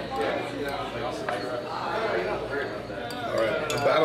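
Restaurant dining-room chatter, with a few light clinks of a spoon against a small ceramic dish and cutlery on plates, several of them near the end.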